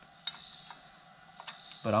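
Steady high-pitched insect chorus, with a few faint light clicks of a bottom bracket tool against the splined rotor lock ring on a bike hub.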